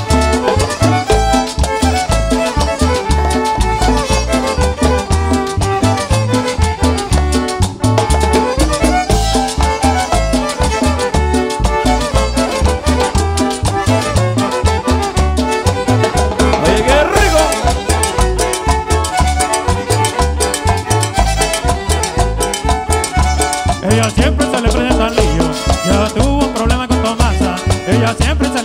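Live Latin dance band playing an instrumental passage of a cumbia-style campirana song, with an even, pulsing bass beat under guitars, keyboard and percussion.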